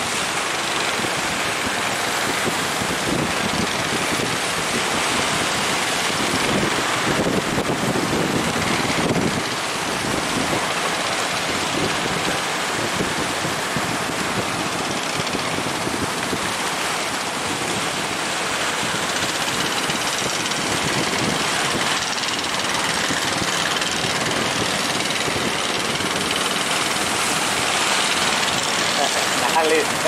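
Rough surf and wind buffeting the microphone, a steady rushing noise, with the motors of small outrigger fishing boats running beneath it.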